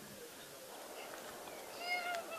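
A short, high-pitched cry near the end, over faint outdoor background.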